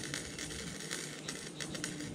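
Steady crackling arc of a small wire-feed welder laying a weld on the seam between two thin steel drums.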